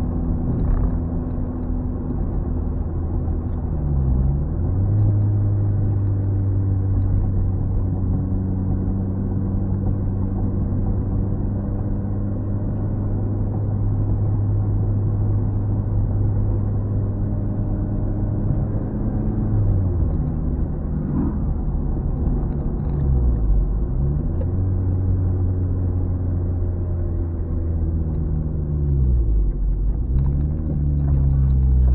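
Turbocharged car engine heard from inside the cabin with the windows mostly up, running steadily under way. The revs dip and climb back four times, about 4, 20, 23 and 29 seconds in.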